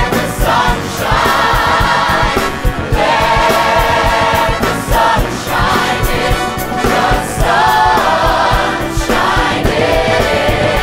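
Cast choir singing in unison and harmony in long phrases over a rock-musical band with a steady drum beat.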